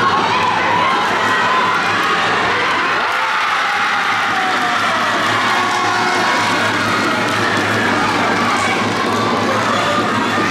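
Spectators cheering and children shouting together, a loud, steady din that carries on without a break, the crowd's reaction to a goal in a youth futsal match.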